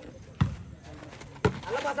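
A volleyball struck by hand twice, two sharp slaps about a second apart: the serve, then the receiving pass. Players shout near the end.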